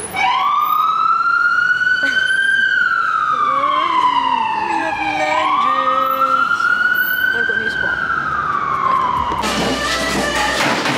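An emergency vehicle siren wailing, its pitch rising and falling slowly twice, each sweep lasting several seconds, heard from inside a car. It cuts off suddenly shortly before the end.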